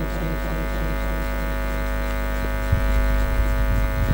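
Steady electrical hum and buzz from a live public-address sound system, with a low rumble underneath. A single dull thump comes a little before three seconds in.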